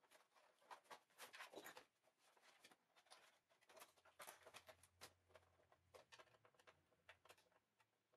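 Faint, scattered clicks and taps of hands handling a plastic TV's back cover and working out its screws.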